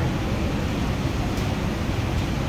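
Steady low rumble of background noise, with a faint short click about one and a half seconds in.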